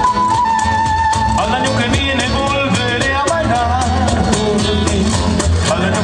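Live Andean folk band playing: strummed acoustic guitars, electric bass and a cajón keeping a steady beat. A melody holds one long high note, then turns into a wavering tune from about a second and a half in.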